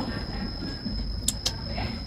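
Outdoor background noise in a pause between speech: a low steady rumble with a faint steady high whine, and two short high chirps close together a little past halfway.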